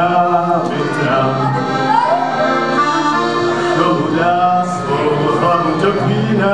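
Accordion playing a tune in live music, the melody running on without a break.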